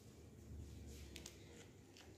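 Near silence: faint room tone with a couple of faint light clicks about a second in, a metal spoon touching the plate as it presses coconut barfi mixture flat.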